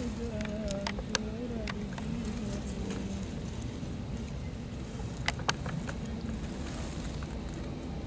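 Wind buffeting the microphone as a steady low rumble, with a faint wavering voice-like tone over the first few seconds and scattered sharp clicks.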